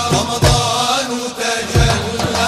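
Male vocal ensemble singing an Arabic devotional inshad together in long, bending melodic lines, over hand-drum beats with a strong stroke about half a second in and another near the end.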